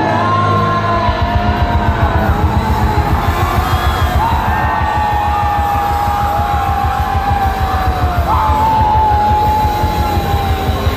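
Live band playing loud through an outdoor PA, heard from the crowd: a held, sliding lead melody over fast, even drum beats that come in about a second in.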